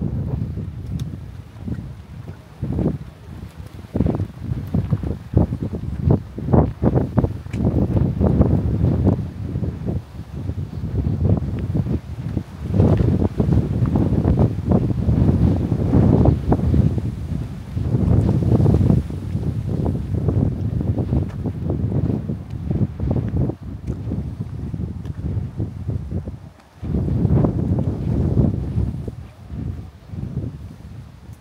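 Wind buffeting the microphone: a gusty low rumble that swells and fades, with a short lull near the end.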